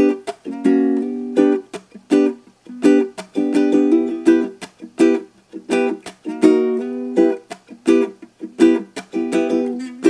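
Ukulele strummed in a steady rhythm with no singing, moving from a G chord to E minor partway through.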